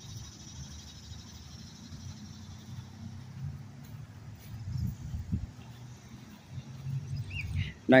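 Outdoor park ambience: a steady low rumble, like wind on the phone's microphone or distant traffic, with a faint high hum in the first few seconds.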